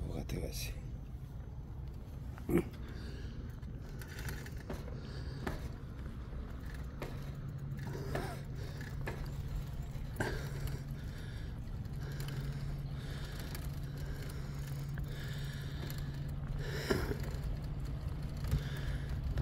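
Bicycle in motion: a steady low rumble, with scattered small clicks and one sharp knock about two and a half seconds in.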